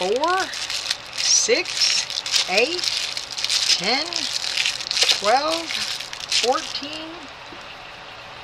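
Clear plastic bags holding silicone molds crinkling and rustling as they are picked up and laid down one after another. The crinkling stops about seven seconds in.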